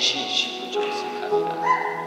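Electronic keyboard playing soft sustained chords beneath a man's voice, with a note stepping up in pitch near the end.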